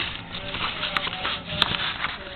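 Two short, light clicks of objects being handled at a table, about a second apart, over a faint steady low hum.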